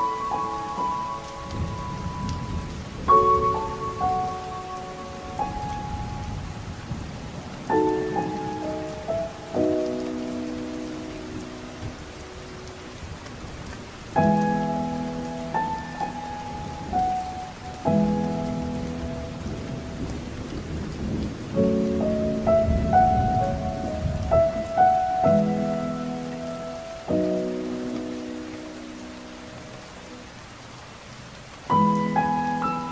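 Slow, soft solo piano chords and melody notes over steady heavy rain, with low rolls of thunder about a second in and again past twenty seconds.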